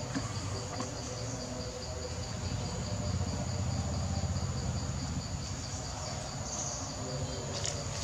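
Insects chirring steadily in forest undergrowth: a continuous high buzz with a rapid pulsing chirp beneath it. Near the end, leaves rustle as a macaque moves through the undergrowth.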